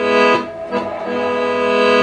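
Accordion playing sustained chords, the chord changing about half a second in.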